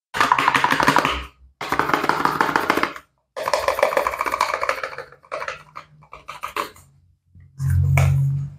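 Paper and cardboard soap packaging being crinkled and torn open by gloved hands. There are three long crackling stretches in the first five seconds, then shorter rustles and handling noises.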